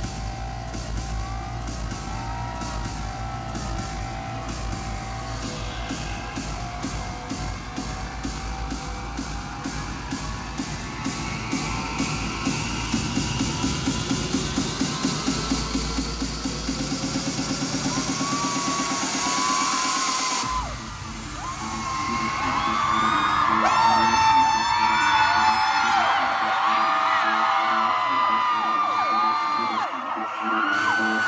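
Electronic intro music over a concert PA: a steady beat with a long rising sweep and quickening pulses building up, then cutting off suddenly about twenty seconds in. Right after, a large crowd screams loudly over the music.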